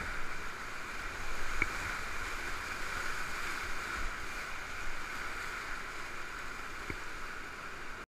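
Whitewater rapids rushing steadily around a kayak in a rock gorge, heard from close on the water, with a low rumble underneath. Two brief sharp ticks stand out, one about a second and a half in and one near the end, and the sound eases a little at the very end.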